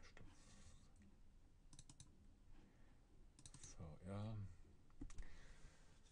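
Quiet computer mouse clicks in quick groups of two or three, double-clicks opening folders, at about two, three and a half and five seconds in.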